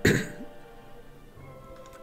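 A man's cough, clearing his throat once right at the start, over quiet background music that carries on steadily.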